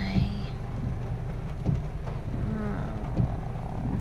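Inside a Toyota Yaris's cabin in the rain: the low, steady drone of the small car's engine, with a soft knock about every second and a half from the windshield wipers.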